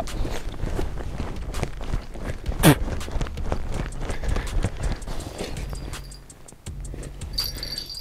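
Irregular crunching and clicking of movement on snow and ice, with one short falling tone about two and a half seconds in.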